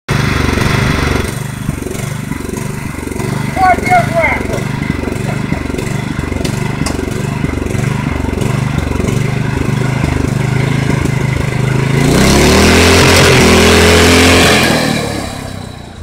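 Small gasoline engine of a stripped-down riding-mower chassis running at a pulsing idle, then revving up about twelve seconds in and holding high and loud for a couple of seconds before fading as the mower drives away.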